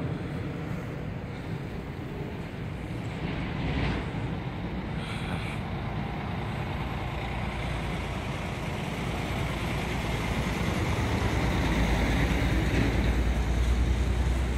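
Wind buffeting the microphone over the steady rumble of road traffic. The low rumble grows louder in the last few seconds.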